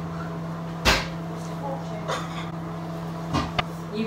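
A single thump about a second in and two quick sharp knocks near the end, over a steady low hum.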